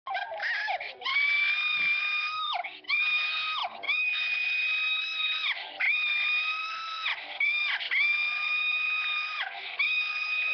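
The PBS P-Head cartoon voice screaming a long, very high-pitched "nooo" over and over. There are about six or seven cries, each held steady for a second or so, then sliding down in pitch, with short breaks between them.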